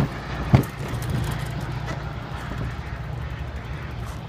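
Diesel locomotive of an approaching commuter train heard at a distance, a steady low rumble, with two sharp thumps at the very start and about half a second in.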